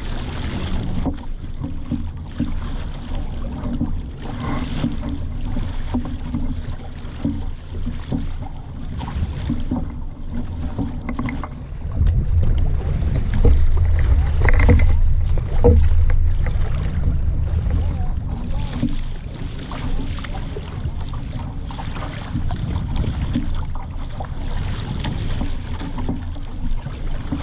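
Wind buffeting a microphone on a small sailing dinghy, with water washing along the hull as the boat sails; the wind grows louder in gusts around the middle.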